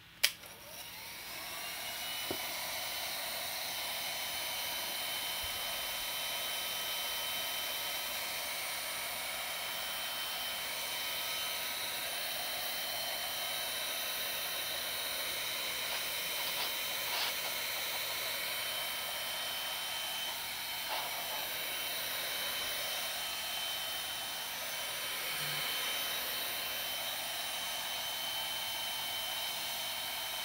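Craft heat gun switched on with a click, then blowing steadily as it dries wet paint, with a thin high whine from its fan motor over the rush of air.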